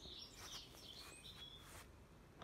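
Near silence with faint bird chirps: a few short, high calls over low background noise.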